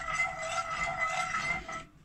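A metal spoon stirring milk in a metal pot, with a steady high whine behind it. The sound cuts off abruptly just before the end.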